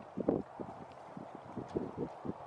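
Small waves lapping against a log at the water's edge: a run of soft, irregular knocks.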